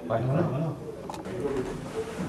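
Men's voices in quiet, indistinct conversation: a short low-pitched utterance at the start, then softer talk, with one small sharp click a little past a second in.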